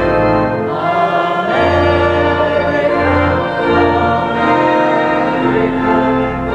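Voices singing a hymn in held chords with instrumental accompaniment, over a low bass line, the chords changing every second or so.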